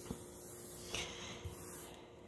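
Faint rubbing of a wet netted dishcloth wiped across a countertop, with a brief swish about halfway and a couple of soft knocks.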